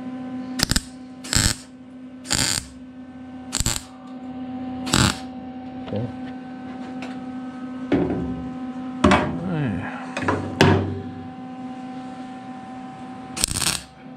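MIG welder laying a series of short tack welds on a sheet-steel cab corner. Each tack is a brief crackling burst: five come in the first five seconds, and one more comes near the end. A steady hum runs underneath.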